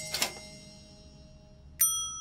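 Title-card sound effect: a brief swish at the start, its ringing fading, then a sharp bell-like ding near the end that rings on in several clear tones.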